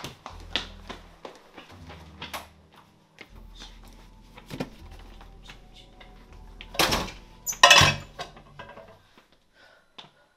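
A low bass line of held notes runs under scattered clicks and knocks. About seven seconds in come two loud clattering crashes, a little under a second apart.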